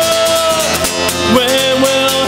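A man singing drawn-out held notes over a strummed acoustic guitar. One long note ends a little over half a second in, and a lower wavering note starts about a second and a half in.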